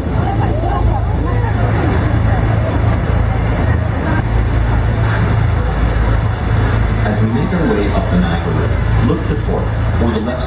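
Steady low rumble of a tour boat's engine under the rush of wind and water, with a crowd of passengers talking over it, the voices plainer near the end.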